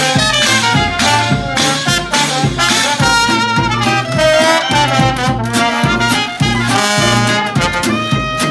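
A traditional New Orleans jazz band plays live in an instrumental passage, with no singing. Horns carry the melody over a tuba bass line, with resonator guitar and an even, steady beat.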